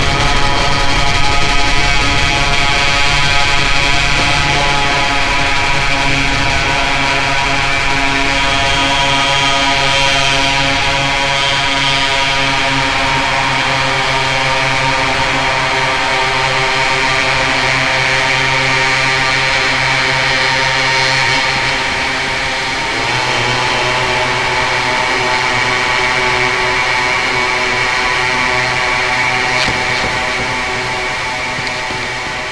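Harsh, buzzing electronic drone from the Empty Glass fuzz pedal's oscillator, pushed through a chain of effects pedals: one steady pitch thick with overtones and a hissing upper layer. The pitch shifts once as the settings are worked, with a brief dip about 23 seconds in.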